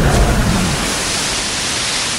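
Animated sound effect of a big ocean wave crashing and splashing: a loud rush of water that slowly eases off.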